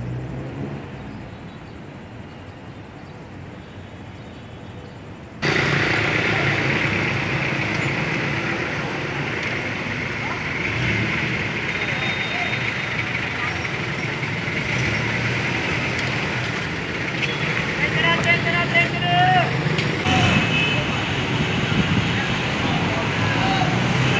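Busy city street ambience: traffic and vehicle engines mixed with the chatter of a crowd. It is quieter and duller at first, then jumps abruptly louder about five seconds in, and a raised voice calls out a few seconds before the end.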